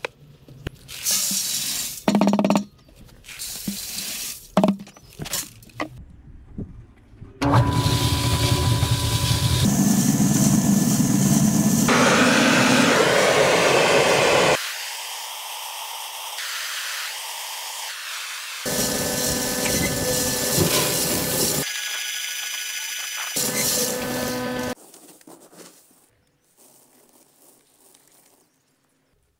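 A run of cut-together work sounds around shredded aluminium. First come short rattles and scrapes of flakes being scooped in a bin, then several long stretches of steady machine noise, which stop and start abruptly at the cuts.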